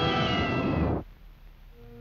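Loud yowling screech, cat-like, as the cartoon dog is jolted awake in fright; it holds one pitch, sags slightly, and cuts off abruptly about a second in. Soft sustained orchestral notes come in near the end.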